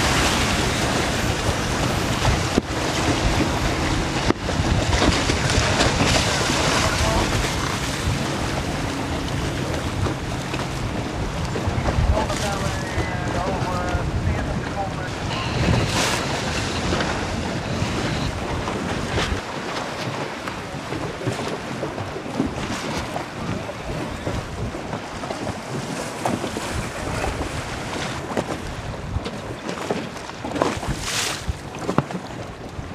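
Heavy wind buffeting the microphone over the rush and slap of choppy waves on open water, with the noise steady and loud throughout and easing slightly in the second half.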